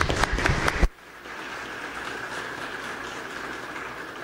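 Audience applause in a hall following a speech. For about the first second it is loud and close with sharp knocks; then it drops suddenly and goes on as an even, more distant patter of clapping.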